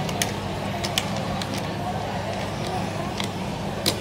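Hubbub of indistinct children's and adults' voices echoing in a large indoor hall over a steady low hum, with a few sharp knocks, the loudest near the end.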